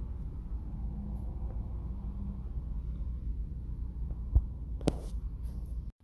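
Low steady background hum, with two sharp taps about half a second apart near the end, fingertips tapping on a smartphone screen.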